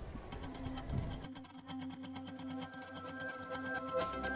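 Quiet background music: held notes over a fast, even pulse.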